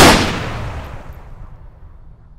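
A single loud bang that hits sharply and dies away in a long tail over about two seconds.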